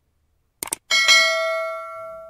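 Subscribe-button sound effects: a quick cluster of mouse clicks a little over half a second in, then a bell ding struck twice in quick succession that rings on and slowly fades.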